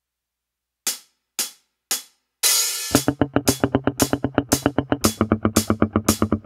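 A drum backing track counts in with three short hi-hat-like clicks and a cymbal crash, then a steady beat starts under a Washburn Taurus T-24 four-string electric bass picked with a plectrum in fast, even muted sixteenth notes.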